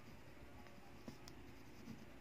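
Faint scratching of a pen writing on paper, with a couple of small ticks of the pen.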